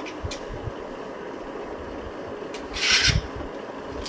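White plastic gooseneck desk lamp being handled and twisted: a couple of light clicks, then a short rasping rub of plastic about three seconds in.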